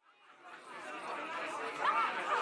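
Several people talking at once, a babble of overlapping voices that fades in from silence over the first second.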